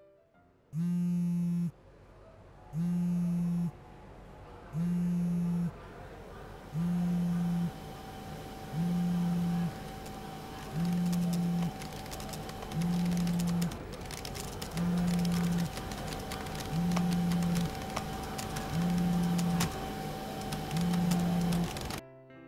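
Smartphone on vibrate buzzing with an incoming call: eleven low buzzes of about a second each, one every two seconds, over a faint steady tone.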